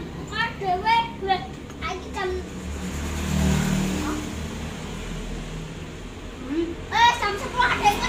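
Children's voices in the background, talking and calling in short high-pitched bursts. In the middle stretch the voices give way to a low, steady rumble, then return near the end.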